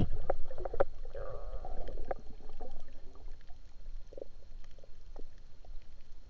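Water noise: a steady low rumble with many faint scattered clicks and a short hazy swish about a second in.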